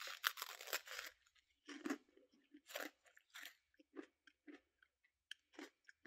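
A bite into a freeze-dried ice cream sandwich, hard and crumbly, with a burst of crunching, then chewing crunches that come further apart and grow fainter.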